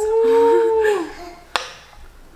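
A woman's long drawn-out "ooooh" of delight, rising at the start and falling away after about a second, with a second, lower voice joining briefly. About a second and a half in comes one sharp clink of a metal spoon against the stainless steel pot.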